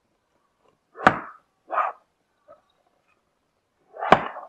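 A cardboard router box handled on a table: a sharp knock about a second in, then a shorter, softer handling noise just after it.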